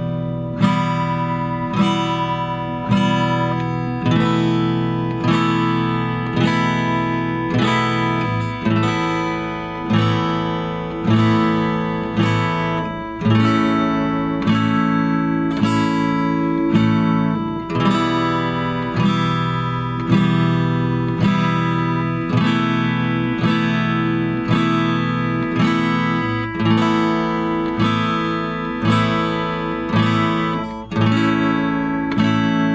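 Acoustic guitar in standard tuning strummed through a progression of E minor, E suspended 4, A suspended 2 and A major, four even strums on each chord at about one strum a second, the cycle repeating.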